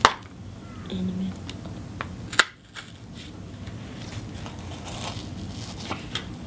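Pencil point pushed and twisted into a cardboard disc to punch a hole through its centre: scattered crunching and scraping of cardboard, with one sharp click a little over two seconds in.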